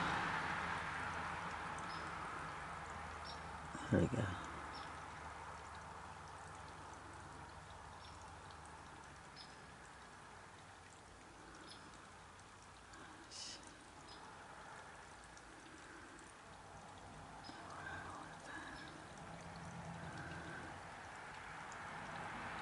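Quiet outdoor background: a faint steady hiss, broken by a single low thump about four seconds in and a few faint clicks.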